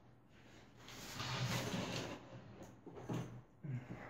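Faint off-camera rummaging through a drawer while searching for something to cut the parcel open: a second or so of sliding and rustling, then two or three light knocks near the end.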